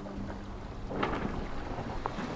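Wind on the microphone and water rushing past the hull of a sailing yacht under way, a low rumbling noise with a faint steady hum at first. About a second in the rush grows louder.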